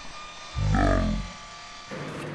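A man's single drawn-out, falling groan of "no" lasting under a second, about half a second in, over a faint steady hum. It is dismay on finding that his mitre cut is not square.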